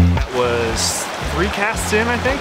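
Background music that drops sharply in volume at the start and carries on low, with a voice heard briefly twice over the steady rush of river water.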